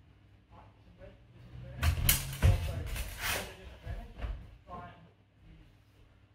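A sparring exchange with a spadroon and a dussack: several sharp clashes and knocks of the practice swords, bunched over about a second and a half starting about two seconds in, followed by a few lighter knocks and a brief call.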